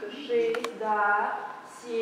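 A high-pitched voice speaking in drawn-out phrases, with two quick clicks about half a second in.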